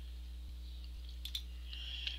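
A few faint computer mouse clicks a little past a second in, over a low steady hum.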